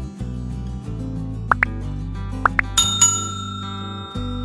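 Background music, over which come four short rising pop sound effects in two pairs, then a bright bell ring about three seconds in that rings on: the click-and-bell sound effects of a subscribe-button animation.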